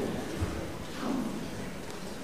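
A pause in speech: quiet room tone, with a soft low thump about half a second in and a faint brief voice sound about a second in.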